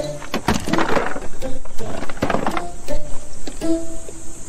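Tense background music: held steady tones under sharp percussive hits, with two swells that rise and fall.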